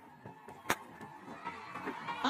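A single sharp crack of a cricket bat striking the ball, about two-thirds of a second in, over low stadium background noise.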